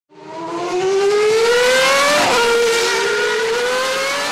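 Racing car engine accelerating hard, fading in at the start: its pitch climbs steadily, drops sharply at a gear upshift a little past two seconds in, then climbs again through the next gear.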